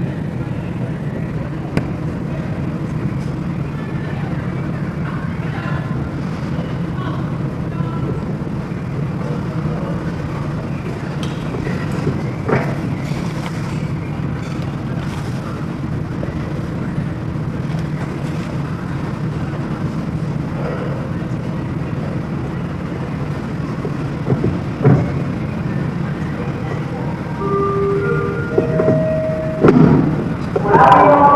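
Steady low background rumble with faint, indistinct voices of onlookers, broken by a couple of sharp knocks.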